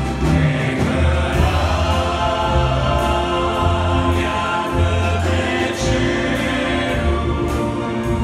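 Live Romanian worship song: several voices singing together over electric bass guitar and keyboards, with deep bass notes changing about once a second.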